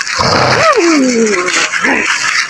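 A short rustling scuffle, then a person's drawn-out cry falling steadily in pitch for about a second, as from the boy who has just hurt his head.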